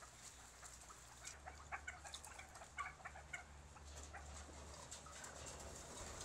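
Barbary partridges calling faintly: scattered short clucks and chirps, busiest in the middle seconds, over a low steady hum.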